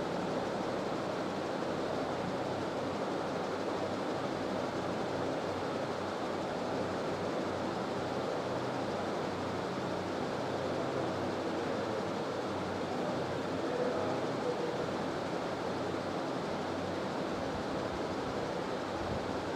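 Steady, even background hiss of room noise, with no other distinct sound.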